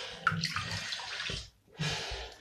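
Water rushing in a bathtub, breaking off briefly about a second and a half in.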